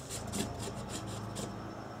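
A 36 mm oil filter socket being fitted onto a ratchet: a few faint rasping scrapes and clicks of metal tool parts, over a low steady hum.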